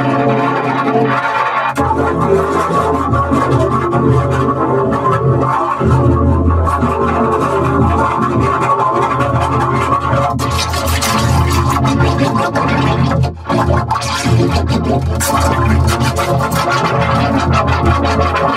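Electronically 'chorded' audio: many pitch-shifted copies of the same sound stacked into one dense, organ-like chord that runs on continuously, broken only by a short dip about thirteen seconds in.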